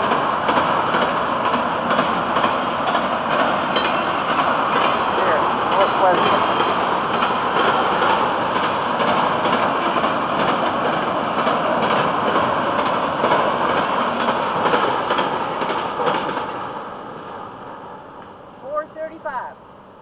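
Autorack freight cars rolling past on the rails: a steady noise of wheels on track that fades away over the last few seconds as the end of the train goes by.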